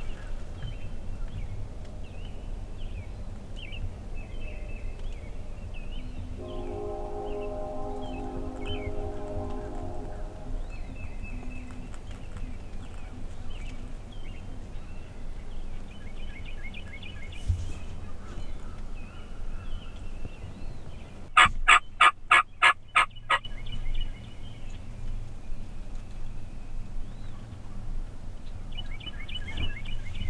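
A wild turkey gobbler gobbles once, loudly, about two-thirds of the way through: a rapid rattling burst of about eight notes lasting under two seconds. Small songbirds chirp throughout.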